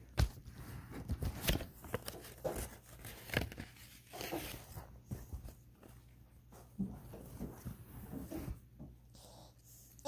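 Hands rustling and handling small paper gift items, with irregular light clicks and crinkles and no steady tone.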